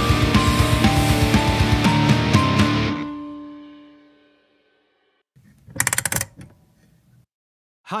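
Alternative rock/metal band outro with guitars and drum kit over sustained melody notes, ending on a final chord that fades away about three to four seconds in. A short rapid rattle of clicks follows about five and a half seconds in, lasting about a second and a half.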